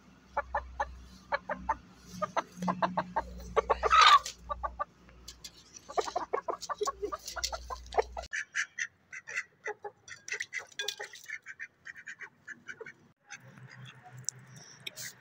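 Aseel chickens clucking in quick runs of short notes, with one loud squawk about four seconds in.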